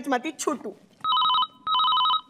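Telephone ringing in a double-ring pattern: two short trilling bursts, the first about a second in and the second soon after.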